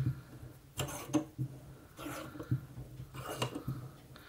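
Sash clamp screw being wound back by hand, with a few scattered small metal clicks and scrapes, as it lets out the tension of an air rifle's compressed mainspring.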